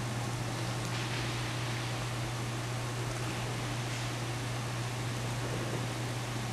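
Steady hiss with a constant low hum, the background noise of the room and recording, with a few faint rustles of the nylon parachute container as hands work the bridle into it.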